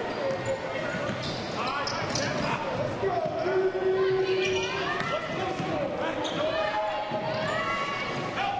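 Live game sound on a basketball court: a ball being dribbled on the hardwood and sneakers squeaking in short repeated chirps as players cut, over the murmur of voices in the gym.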